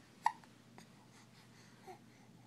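A young baby hiccups once, a short sharp sound about a quarter second in, followed by two much fainter little sounds.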